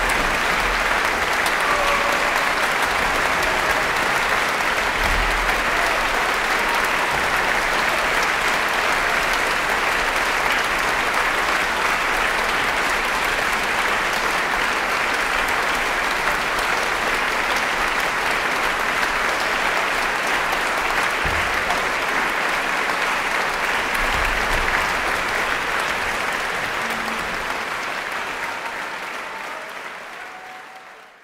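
Concert audience applauding steadily, fading out near the end.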